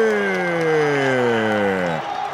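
A male football commentator's long drawn-out shout in Portuguese, one held vowel sliding steadily down in pitch and fading toward the end, as a Brazil attack reaches the goalmouth.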